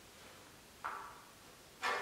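Two sharp knocks from a metal music stand being handled, about a second apart, the second louder, each ringing briefly and dying away in the hall's reverberation.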